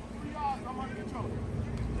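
Faint, distant men's voices calling out briefly on an outdoor football practice field, over a steady low rumble.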